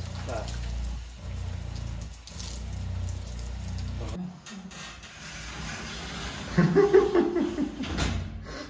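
Water spraying from a handheld shower head on a camper van, over a steady low hum. About four seconds in, the spray and hum stop abruptly, and a loud burst of voice comes near the end.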